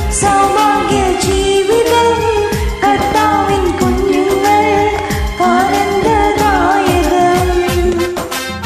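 A woman singing a Malayalam Christian song into an earphone-cord microphone over a karaoke backing track with a steady beat.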